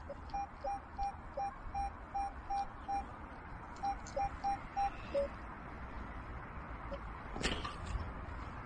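Metal detector giving short, repeated target-signal beeps, about three a second, as its coil is swept over the grass, with occasional lower-pitched blips mixed in; the beeps stop around five seconds in. A brief scuffing noise comes near the end.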